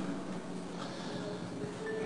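Faint room ambience of a large hall, with a few soft held tones near the end.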